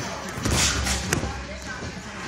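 Boxing sparring in a ring: a burst of thuds and scuffling about half a second in, then a single sharp smack a little after a second, from gloves and feet striking on the ring.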